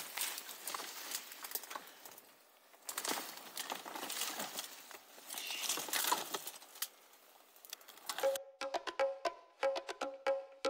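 Dense shrub branches and twigs rustling, scraping and snapping as people force their way through the thicket with their bicycles: an uneven crackle of small clicks. About eight seconds in, music with sharp plucked notes begins.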